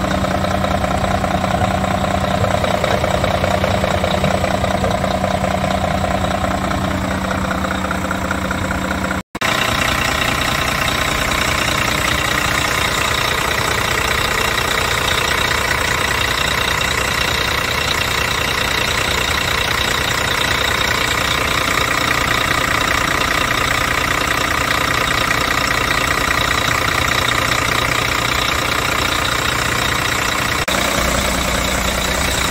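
A DAF CF truck's Paccar six-cylinder diesel engine idling steadily, heard close up in the open engine bay. There is a brief break about nine seconds in, after which a higher steady whine stands out more over the engine.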